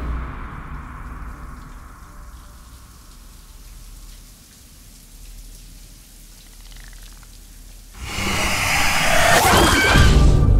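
Shower water spraying and splashing in a steady soft hiss. About eight seconds in, a sudden loud burst of shrill, wavering sound cuts in.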